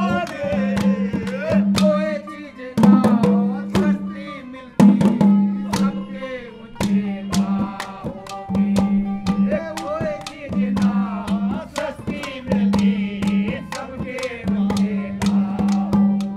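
Ragini folk song: a man singing over a hand drum beating a steady rhythm, with a low held tone from the accompaniment sounding in repeated bars.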